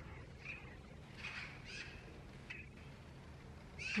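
A few faint, short bird calls over quiet outdoor background.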